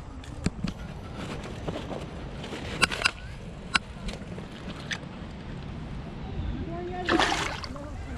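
Shallow water sloshing around a largemouth bass held at the bank and released, with a few sharp clicks of handling. About seven seconds in comes a louder splash as the fish swims off.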